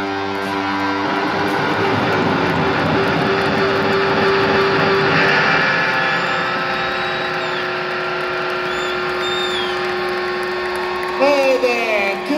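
Large arena crowd cheering and whistling after a rock song, over a held electric guitar chord left ringing out. A man starts talking over the PA near the end.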